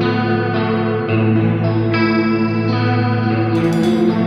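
Instrumental passage of a progressive rock song with no singing: sustained chords that change every half second to a second.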